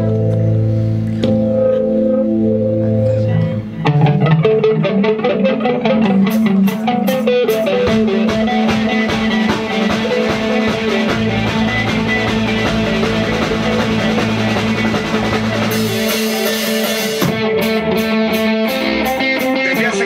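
Live rock band playing instrumentally: electric guitar, bass and drum kit. The playing gets busier and louder about four seconds in.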